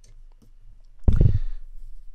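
Stylus tapping and marking on a tablet screen: faint light clicks, then one dull thump about a second in that dies away quickly.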